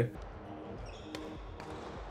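Quiet background music with soft held notes, and a single sharp click about a second in.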